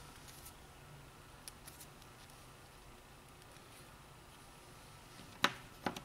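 Quiet handling at a workbench with a few faint small clicks, then two sharp clicks about half a second apart near the end as a hand tool is put down on the bench mat.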